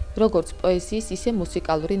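A voice speaking over quiet piano music.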